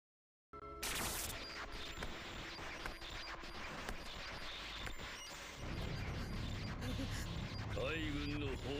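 Anime sound effect for Conqueror's Haki: a sudden burst of dense, noisy crackling with scattered sharp clicks, joined by a deeper rumble about five and a half seconds in.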